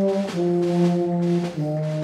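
Brass ensemble playing a slow processional march in sustained chords, the notes changing about once a second with the bass line stepping downward.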